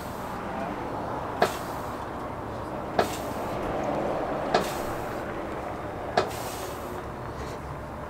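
Steel car-deadlift frame clanking four times, about once every second and a half, as the rear of a car is lifted and set back down in repeated reps.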